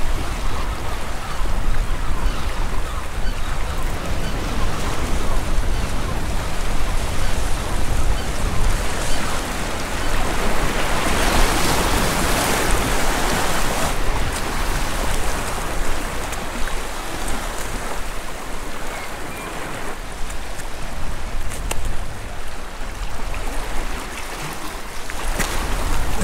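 Sea waves washing over and around shore rocks: a steady rush of water, with one louder surge about eleven to thirteen seconds in.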